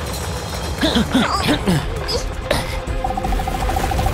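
Cartoon soundtrack: background music over a steady low rumble of an aftershock sound effect, with brief character exclamations, a single sharp knock about two and a half seconds in, and a fluttering tone near the end.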